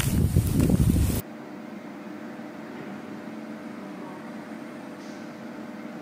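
Wind buffeting a smartphone microphone outdoors, loud and rough, cut off abruptly about a second in. It gives way to a quiet, steady hum with a few low tones: the room tone of an indoor corridor.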